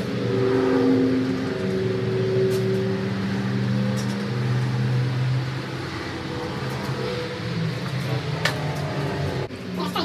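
A steady low droning hum of several held tones that shift in pitch now and then, with a few sharp clicks and knocks as the steel pole and crank of a large cantilever patio umbrella are handled.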